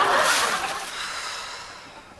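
Studio audience laughter dying away, fading steadily to a low murmur over the two seconds.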